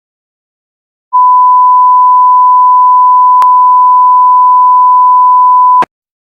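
A single steady 1 kHz sine test tone at full level, starting about a second in and cutting off abruptly near the end, with a brief click partway through.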